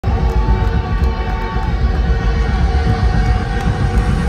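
Loud, droning music through a concert PA in a venue, thick with low rumble, with a couple of held tones in the first second and a half.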